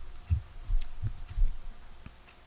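Four soft low thumps, a few tenths of a second apart, with a few faint clicks.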